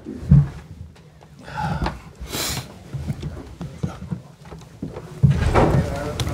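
Handling noise as people settle at a press-conference table and chairs: a knock about a third of a second in, and a short scraping rustle a little past two seconds. Low voices are heard near the start and again near the end.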